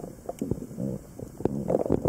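Underwater sound picked up by a camera in shallow sea water: low rumbling water noise with scattered sharp clicks, swelling louder near the end.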